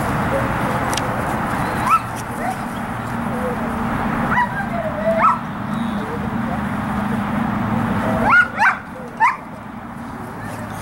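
11-month-old German Shepherd Dog giving short, high-pitched rising yips and whines while working a bite sleeve, about half a dozen of them, several coming close together near the end.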